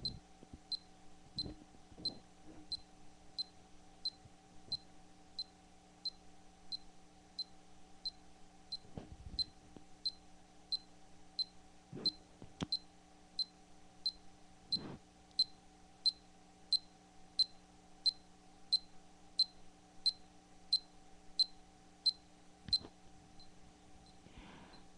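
Small handheld electronic metronome beeping a steady beat, about three short high beeps every two seconds. It is running after the owner wondered whether it still works. A few soft handling clicks fall between the beeps.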